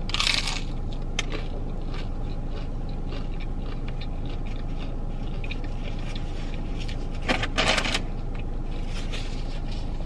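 A bite into a crunchy hard taco shell, crackling sharply at the start, then chewing with a second short bout of crunching about seven and a half seconds in.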